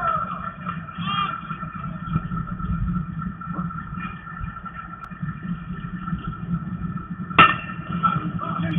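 Open-air ballfield ambience with some players' voices calling early on, then a single sharp crack of a bat hitting a pitched ball near the end.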